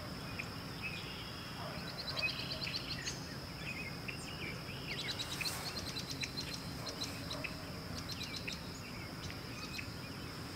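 Birds chirping and calling, with quick trills about two and five seconds in, over a steady high-pitched insect drone and a low background rumble.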